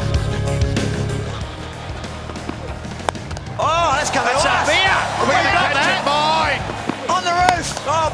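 Background music with a steady low bass line. About three seconds in, a single sharp crack of a cricket bat striking the ball, followed at once by loud, excited voices whose pitch rises and falls.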